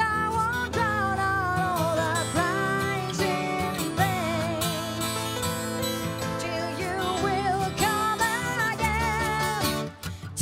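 A woman singing with vibrato over strummed acoustic guitar and keyboard, a stripped-down acoustic arrangement of a metal song. The music drops away briefly near the end between phrases.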